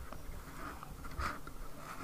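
Faint scuffs and rustles of a hand working a metal microphone-arm desk clamp free of its foam packing insert, with a soft knock a little over a second in.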